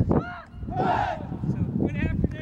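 Voices of a group of people talking and calling out, with a louder brief shout about a second in.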